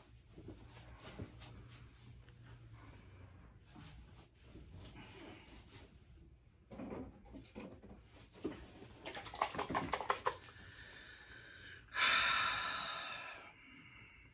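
Quiet handling and rustling noises, with a quick run of clicks near the end and then a louder rustle that fades out over about a second and a half.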